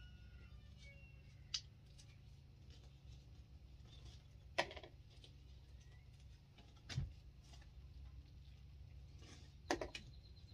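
Quiet food-handling sounds as gloved hands pull bulbs from a ripe jackfruit: four short, sharp clicks or taps spread a couple of seconds apart, over a steady low hum.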